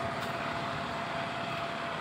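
Steady roadside traffic noise: a continuous, even hiss with no distinct events and a faint steady tone underneath.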